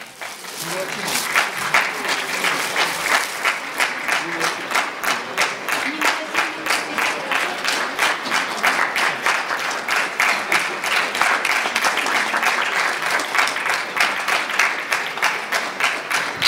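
Audience applause, building up over the first second or two and then keeping up steadily.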